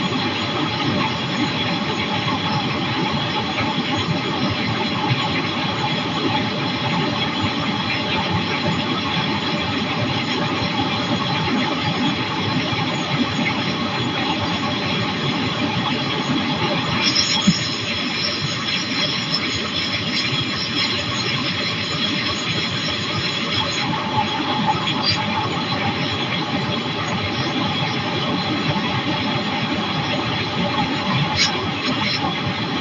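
Flexwing microlight trike in cruising flight: the engine and pusher propeller run with a steady drone mixed with wind rush. The higher whine shifts in tone for a few seconds a little past the middle.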